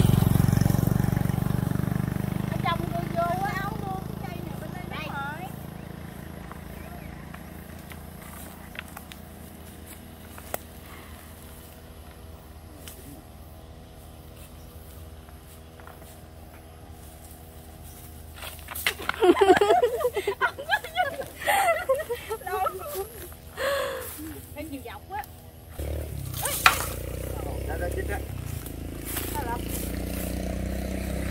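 A motor vehicle passing close on the road, loudest at the start and fading away over about six seconds. Voices come in later, and a second vehicle's low rumble builds near the end.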